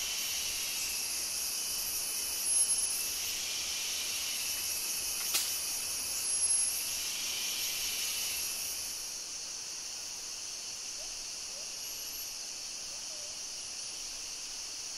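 Steady, high-pitched chorus of rainforest insects, with one layer of the chorus fading out about nine seconds in and a faint click about five seconds in.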